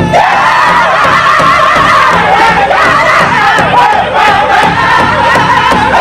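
Powwow drum group singing a traditional song together, many male voices pitched high and wavering in unison. The big drum's beats are faint under the voices.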